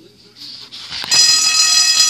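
A bell starts ringing suddenly about a second in, loud and steady, with many high overtones, and keeps ringing to just past the end.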